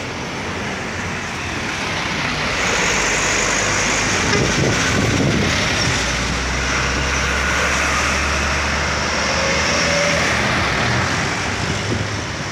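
A bus and then a truck pass close at speed, their engine and tyre noise building to a loud, steady rush. A low engine drone comes in about halfway through as the truck goes by, then fades slightly near the end.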